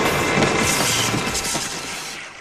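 The tail of a blast sound effect: a loud, noisy rumble with crackling that slowly dies away near the end.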